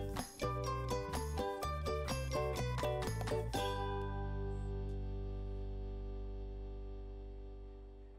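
Background music: a run of quick notes that ends about three and a half seconds in on a held chord, which rings on and slowly fades.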